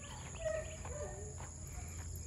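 Steady high-pitched insect drone of crickets or similar summer insects, over a low steady rumble, with a few faint short pitched sounds around half a second to a second and a half in.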